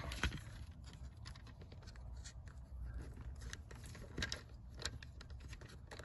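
Faint, scattered small clicks and scrapes of fingers working at a plastic wiring plug on the back of a car dashboard clock, squeezing at its release tab without the plug coming free.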